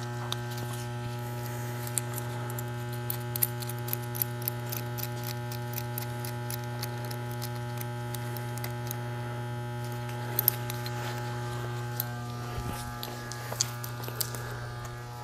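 A steady electrical hum, with scattered small metallic clicks and rattles as a metal clip on a retrieval cable is worked onto the end of a pipe-lining packer; a couple of the clicks are sharper, about three and a half and ten seconds in.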